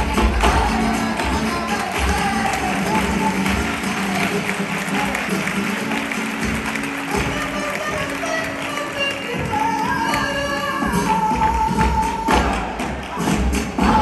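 Live flamenco: an ensemble clapping palmas in rhythm, with a dancer's footwork stamps on the stage and a voice singing cante over it. A long held sung note comes about ten seconds in.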